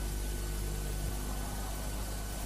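Steady hiss with a low, constant mains-type hum and its overtones: the background noise of an old television broadcast recording between commentator's phrases.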